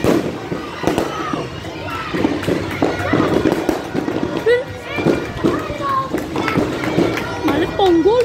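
People's voices and calls outdoors over background music, with scattered sharp cracks of firecrackers going off.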